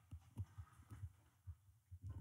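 Near silence, with a few faint, soft low thumps at uneven spacing.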